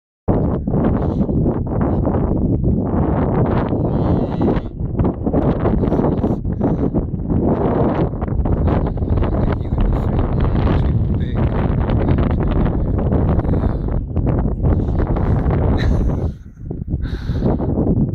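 Wind buffeting the camera microphone in loud, gusty rumbles that ease briefly near the end.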